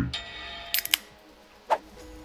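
Aluminium soda can being cracked open: a quick cluster of three sharp cracks a little under a second in, followed by a single softer click near the end.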